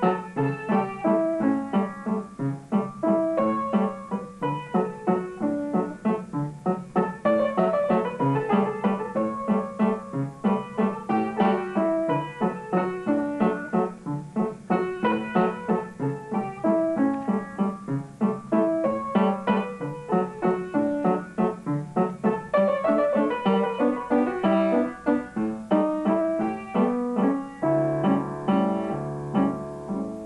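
Upright piano played by a child: a steady stream of quick, separate notes, with lower held notes coming in the bass near the end.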